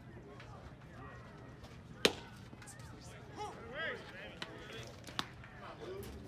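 A single sharp crack of a pitched baseball striking, about two seconds in, with a much smaller click a few seconds later. Faint voices call out in the background between them.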